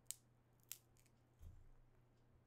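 Near silence: room tone with a low hum. There are two faint short clicks and a soft tap about one and a half seconds in.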